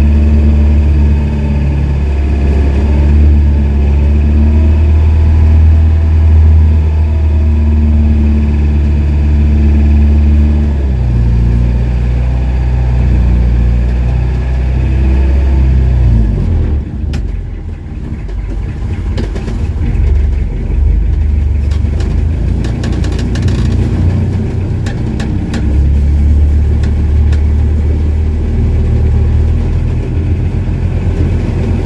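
Motorized outrigger fishing boat's engine running loud and steady. About halfway through its low note drops away and a few scattered clicks and knocks are heard, then the engine comes back up strongly a few seconds before the end.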